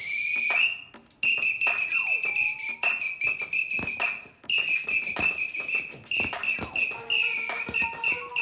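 A coach's whistle blown in a long run of short, high blasts, about two a second, with music and light thuds underneath.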